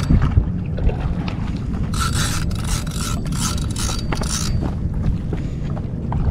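Hoodie fabric rubbing and scraping over a body-worn camera's microphone, over a steady low rumble of wind and handling noise. A run of short scratchy rustles comes about two to four and a half seconds in.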